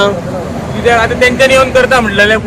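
Speech: a man talking, over a steady low background hum.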